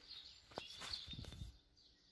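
Faint outdoor background noise with a bird chirping faintly in the first second, then near silence near the end.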